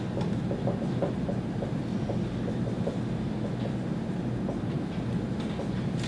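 Steady low room hum with faint, irregular light taps and strokes of a dry-erase marker writing on a whiteboard.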